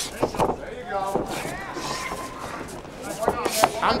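Short thuds of knee strikes and bodies colliding as two MMA fighters are clinched against the cage, a few separate hits over arena crowd noise and shouting.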